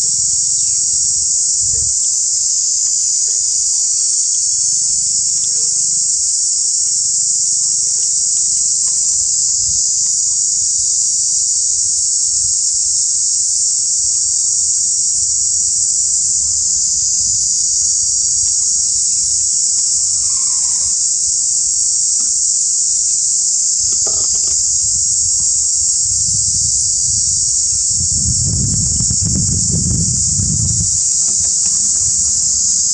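Steady, high-pitched chorus of insects buzzing without a break, with a low rumble swelling near the end.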